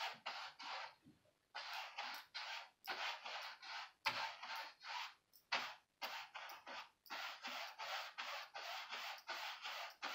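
Paintbrush bristles scraping back and forth across a canvas with acrylic paint, in quick rhythmic strokes about three a second, with a couple of brief pauses.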